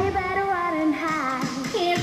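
Routine music with a singing voice carrying a melody that slides up and down, the bass and beat dropping out under it, then returning just at the end.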